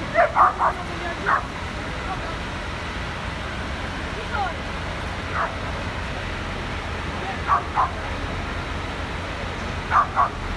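A dog barking, short sharp barks mostly in pairs and threes a few seconds apart, over a steady low rumble of fire engines running in the street.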